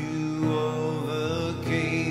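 A worship song: a voice sings long held notes with a slight waver over steady instrumental accompaniment.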